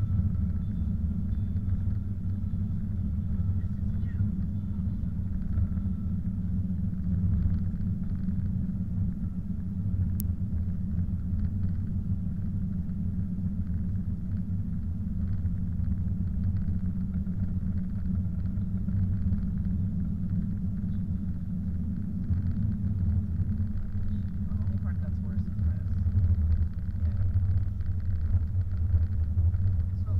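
Steady low rumble of a car's engine and tyres on a snow-covered road, heard from inside the cabin.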